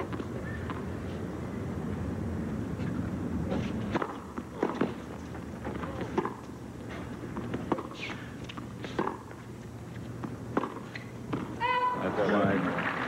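A low crowd murmur from the stands for the first few seconds. Then a series of sharp, separate tennis-ball pops as the ball is struck by rackets and bounces on the court.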